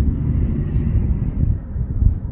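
A steady, fairly loud low rumble with no pitch to it. A faint click comes about three-quarters of a second in.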